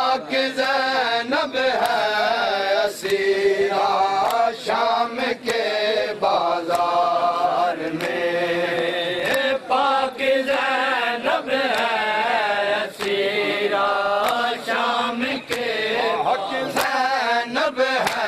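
Shia matam: male voices chanting a noha lament without pause, with sharp slaps of hands striking bare chests punctuating the chant one or two times a second.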